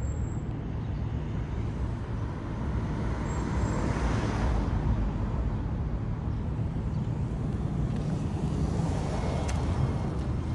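Street traffic noise: a steady low rumble, with a passing vehicle swelling and fading about four to five seconds in.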